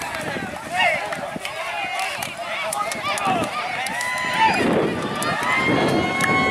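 Several people's voices talking and calling out at once on an open football pitch, with a few long held calls about four seconds in and near the end.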